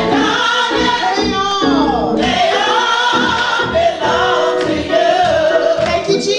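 Gospel choir singing, with women's voices leading on microphones and held notes that waver in pitch.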